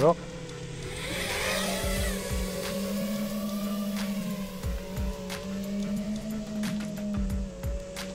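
Five-inch FPV quadcopter flying on Gemfan Hurricane 51433 three-blade props, its motors whining with a pitch that wavers slowly as the throttle changes, and a rush of louder prop noise about a second in. Background music plays along.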